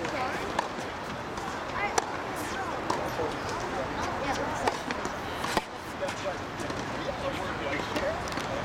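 Tennis practice rally: a handful of sharp racquet-on-ball hits spread through, over steady indistinct background voices.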